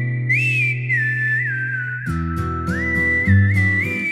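A whistled melody, one pure line gliding from note to note, over a soft instrumental backing of sustained low chords that change about halfway through: the whistled break of a slow love song.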